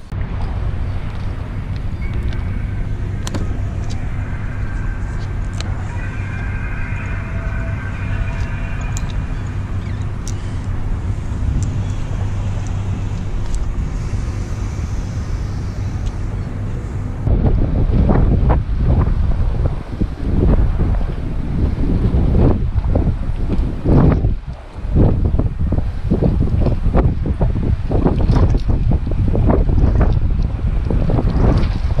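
Wind buffeting the microphone in loud, uneven gusts from a little past halfway, after a steady low hum in the first half.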